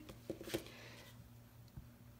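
A few faint clicks and taps as a plastic squeegee is picked up from the work table and handled, over a faint steady hum.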